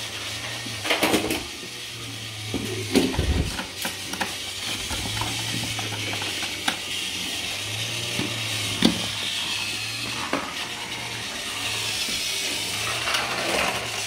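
Motors of small battery-powered toy locomotives whirring steadily as they run along plastic track, with scattered light plastic clicks and knocks.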